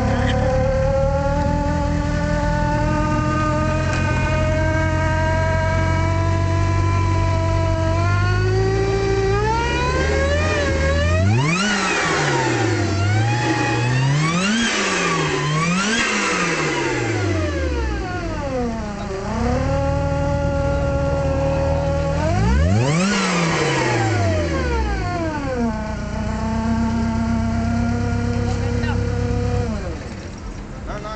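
Volkswagen Corrado G60 engine fitted with a Lysholm twin-screw supercharger, idling at first with its pitch creeping slowly up, then revved in four quick blips through the middle, three close together and one a few seconds later. It drops back to a steady idle each time.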